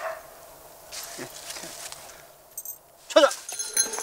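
A Belgian Malinois, held back by its handler, makes a few short excited sounds. Near the end the handler shouts the release command '찾아!' (find!) to send the dog off on a search.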